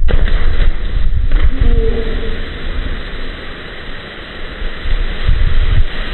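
Strong wind buffeting the microphone in uneven gusts, mixed with the hiss of water splashing as jumpers plunge into the pool below.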